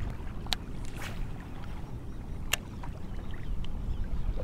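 Water lapping and slapping against a Hobie Outback kayak's hull on choppy water, over a steady low wind rumble. Two sharp clicks about half a second and two and a half seconds in.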